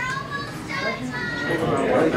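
Indistinct chatter of several people talking at once in a dining room.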